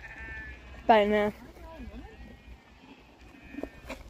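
Sheep bleating: one loud quavering bleat about a second in, with fainter bleats around it.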